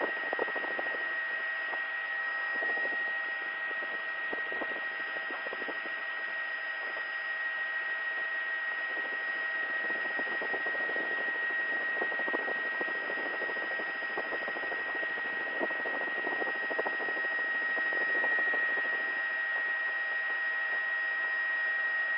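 Steady helicopter cabin noise heard through the crew's intercom: an even hiss with a constant high-pitched whine running through it.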